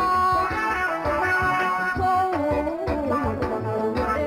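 A Somali song: a woman singing a melody over band accompaniment with a steady low beat.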